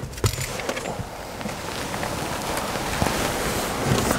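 Steady rushing wind noise on the microphone, slowly growing louder, mixed with rustling and small knocks of handling.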